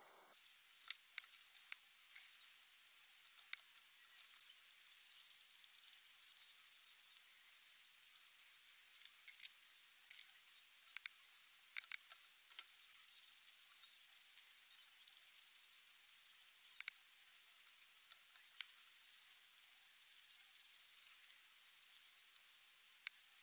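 Guinea pig nibbling a treat: sharp, irregular crunching clicks, some in quick clusters, over a faint steady hiss.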